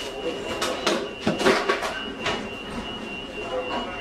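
Fast-food restaurant counter ambience: background voices and kitchen clatter under a steady high-pitched tone. A few sharp knocks and clanks come about one to two seconds in.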